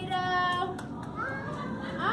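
Young children's high-pitched voices calling out in drawn-out, sing-song tones, over the noise of a large room.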